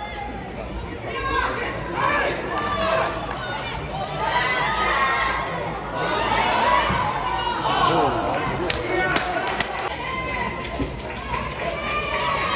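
Several voices talking and calling out around a football pitch during play, over a steady low rumble. A few sharp taps come about nine seconds in.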